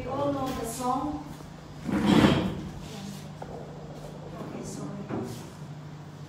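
A woman's voice briefly over a microphone, then about two seconds in a loud half-second burst of noise, with a low steady hum underneath.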